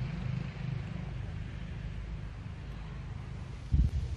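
Steady low rumble of outdoor background noise, with a single thump near the end.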